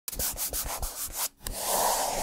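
Dry scratchy rubbing strokes, about six in quick succession, each with a soft low thud. After a brief break comes a rising rush of hiss, as intro sound effects.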